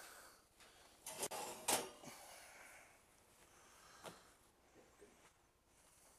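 A few brief knocks and clatters of cookware being handled in a kitchen. The loudest is a sharp knock a little under two seconds in, and a fainter knock comes about four seconds in.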